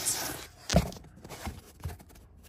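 Plastic third brake light housing being worked loose from the rear parcel shelf of a Mercedes W126: one sharp knock a little under a second in, then a few fainter clicks.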